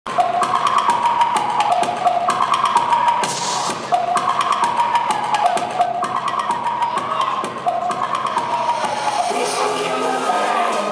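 Music with a fast percussive beat and a short melodic phrase that repeats about every two seconds.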